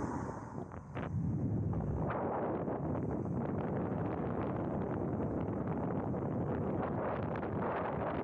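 Wind rushing over a small action camera's microphone as an e-bike rolls along a road. The noise dips briefly about a second in, then holds steady.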